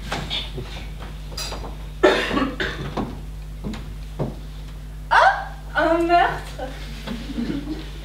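Short bursts of voice from actors on a stage, with a rising exclamation about five seconds in and a couple of light knocks in between, over a steady low electrical hum.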